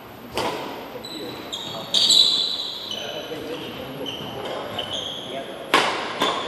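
Badminton rally in a large hall: three sharp racket strikes on the shuttlecock, about half a second in, at two seconds and near the end, with short high squeaks of court shoes on the wooden floor in between.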